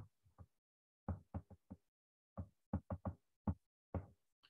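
A stylus tapping on an iPad's glass screen during handwriting: about a dozen short knocks in irregular little clusters.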